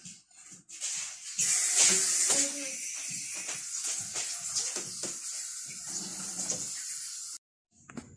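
Tap water running into a kitchen sink while dishes are washed by hand, with clinks and knocks of plates and pans. It cuts off suddenly near the end.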